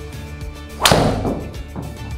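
Driver head striking a golf ball: one sharp crack a little under a second in, fading quickly. A mis-hit struck low on the heel, close to a shank.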